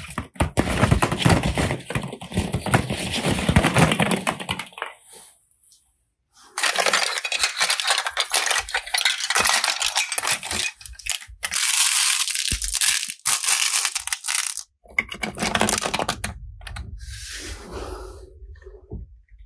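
Hollow plastic toy balls and capsule eggs clattering and knocking together as a hand rummages through them. The sound comes in dense runs of rapid clicks, with a short quiet break about five seconds in.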